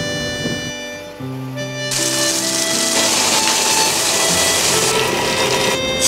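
Background music with held melodic notes. From about two seconds in until about five, a loud hiss of chicken wings deep-frying in hot oil comes in over it.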